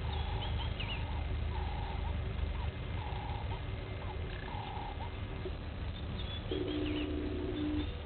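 Birds calling in the bush: a short mid-pitched call repeated about once a second, a few higher chirps, and a low steady call held for about a second near the end, over a steady low rumble.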